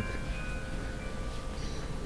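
Chiming tones at several pitches, each held and ringing out, over a steady low background rumble.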